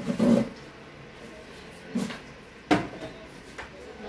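A couple of short knocks and bumps of things being handled, the sharpest and loudest about three seconds in.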